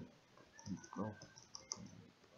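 Clicks of a computer's keys and mouse as a web page is scrolled, the sharpest about three quarters of the way in, with a quiet voice briefly in the middle.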